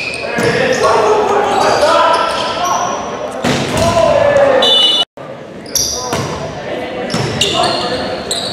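Volleyball rally in a gym: players shouting calls, sneakers squeaking on the hardwood floor, and the ball being struck, all echoing in the hall. The sound cuts out for an instant about five seconds in.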